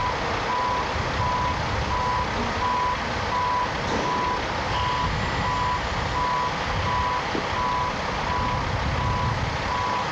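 Back-up alarm on heavy demolition equipment beeping steadily, about two beeps a second, over the steady rumble of heavy machinery running.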